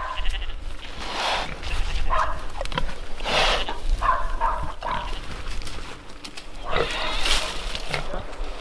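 Mangalitza woolly pigs squealing and grunting, a series of separate calls over several seconds, some pitched and some rougher.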